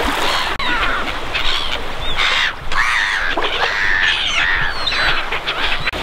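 Birds calling: a quick series of loud, arching calls, one after another, over steady background noise.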